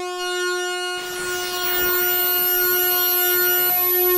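Moog modular synthesizer holding one steady note. About a second in, a hiss and sweeping high tones come in over it, one falling quickly, as the preset card's sliders are moved.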